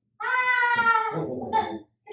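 A young child's high-pitched, drawn-out cry: one long note falling slightly in pitch, then a few shorter broken sounds.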